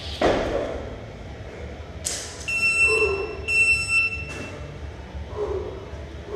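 A thud as a jumper lands on the gym floor, then two long electronic beeps from a timer, each just under a second, one right after the other.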